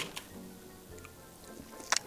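Quiet background music, and someone eating straight from a large block of jello, with a short, sharp wet noise near the end.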